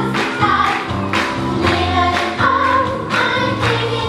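A group of young voices singing together in unison over instrumental accompaniment with a bass line, a stage musical number.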